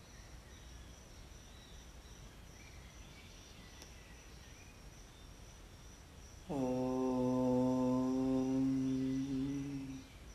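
A man's voice chanting one long held note of a mantra. It starts abruptly about six and a half seconds in, over a faint steady background, and is held for about three seconds.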